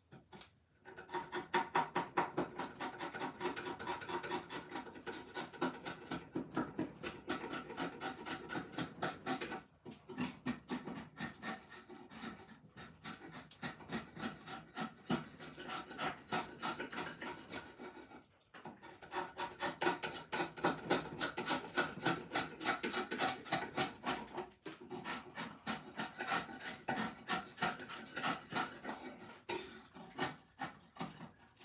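Rasp or file cutting a hickory axe-handle blank in quick repeated strokes, with a few short pauses.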